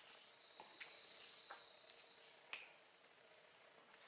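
Near silence: room tone with a few faint clicks, the clearest about a second in and again around two and a half seconds, and a faint thin high whine during the first half.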